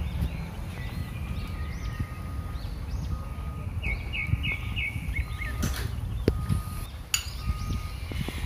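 Small birds chirping over and over in the background, including a quick run of about six chirps some four seconds in, over a steady low rumble. A few sharp clicks come near the end.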